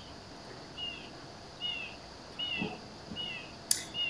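A bird repeating a short, high chirp about once a second, with one sharp click near the end.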